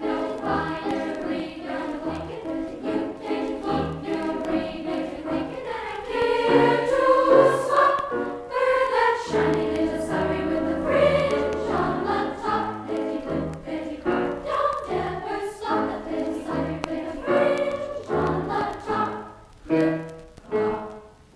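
A school glee club choir singing, played from a vintage vinyl LP record, swelling to its loudest about six to eight seconds in.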